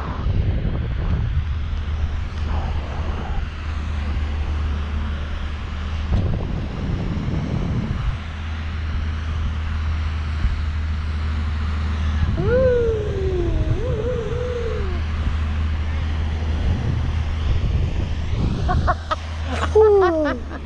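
Wind buffeting the microphone of a handheld camera on a parasail in flight: a steady low rumble and rush. About two-thirds through, a short voice-like sound wavers up and down.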